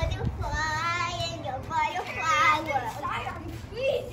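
A child singing in two short, wavering phrases: one about half a second in, another about two seconds in.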